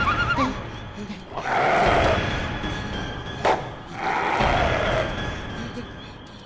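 Dramatic eerie sound effect in the soundtrack, heard as two long swells about two and a half seconds apart with a sharp click between them, over background music.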